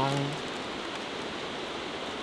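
Steady rushing of a river flowing past, an even hiss with no distinct events.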